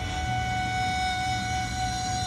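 Background music: a flute-like wind instrument holds one long steady note over a low hum.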